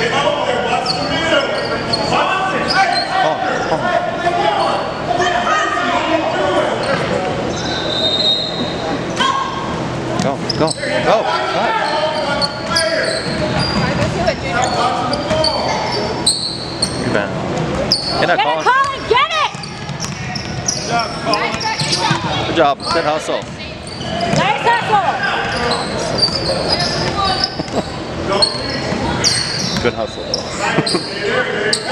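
Basketball game in a gymnasium: a basketball bouncing on the hardwood court, with spectators and players talking and calling out, all echoing in the large hall.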